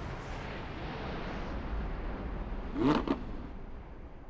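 A car's low rushing rumble, slowly fading, with a brief laugh about three seconds in.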